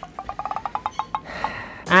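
A quick run of about a dozen short pitched ticks over roughly a second, then a brief hiss: an edited-in sound effect.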